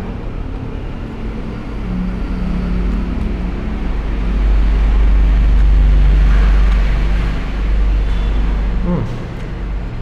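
A low, steady rumble that swells about four seconds in and fades again by about seven seconds.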